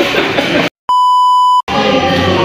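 A single steady, high-pitched electronic bleep lasting under a second, set in by editing with abrupt cuts to silence on either side, at a scene change. Background music and voices play before and after it.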